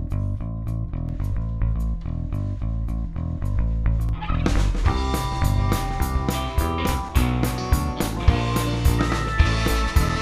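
Live rock band starting a song: electric guitar and bass guitar play over a steady ticking beat, and the full band comes in about four and a half seconds in, fuller and brighter.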